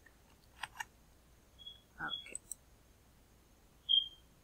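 A few faint clicks of a computer keyboard and mouse, with short high beeps about two seconds in and a louder one right at the end.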